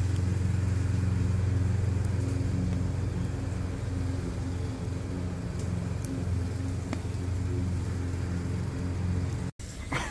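A steady low motor hum, like an engine or machine running, with a few faint clicks over it; it cuts off suddenly near the end.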